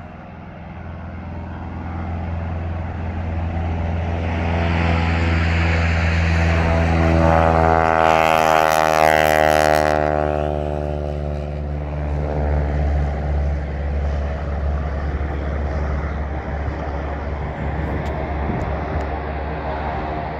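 Grumman Ag Cat biplane's 450-horsepower Pratt & Whitney R-985 radial engine at full takeoff power, the plane heavily loaded. The drone builds over the first few seconds and is loudest as the plane passes close by about eight to ten seconds in, then drops in pitch and eases off as it climbs away. Really loud.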